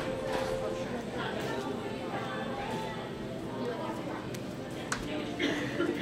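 Indistinct voices chattering in a large indoor arena, with a single sharp click about five seconds in.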